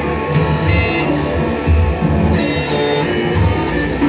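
Loud live band music with a pulsing bass and electronic tones, some high tones falling in pitch partway through.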